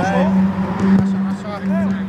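Footballers' short shouts and calls during play, over a steady low hum.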